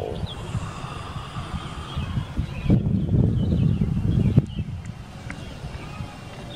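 Wind buffeting the microphone as a low, uneven rumble, with two handling knocks near the middle and a few faint high chirps. The 747 overhead is too high to be heard.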